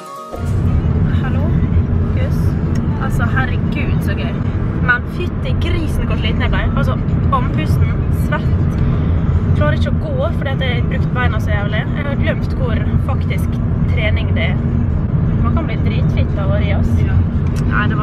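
Steady low engine and road rumble inside a moving car, with a person's voice talking over it.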